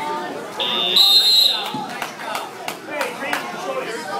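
Electronic wrestling scoreboard buzzer sounding once, a steady high buzz of about a second, over shouting and chatter from the gym. It plausibly signals the end of the period.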